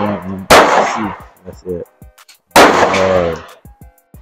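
Two loud gunshots about two seconds apart, each trailing off in an echo across an outdoor firing range.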